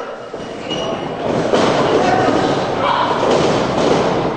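Thuds of wrestlers' bodies hitting the ring canvas, a few impacts from about a second and a half in, over a crowd shouting and cheering.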